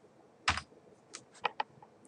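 A few separate keystrokes on a computer keyboard, about five, irregularly spaced, the first, about half a second in, the loudest.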